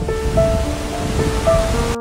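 Steady roar of the Krimml Waterfalls close by, with gentle background music of long held notes laid over it. The water noise cuts off suddenly right at the end, leaving only the music.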